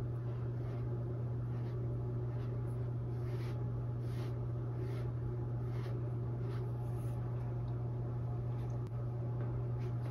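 Dry round mop brush sweeping gently back and forth over a stretched canvas, a faint soft swish about once or twice a second, over a steady low hum.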